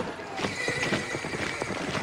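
Horse's hooves clip-clopping in many quick, irregular hoofbeats.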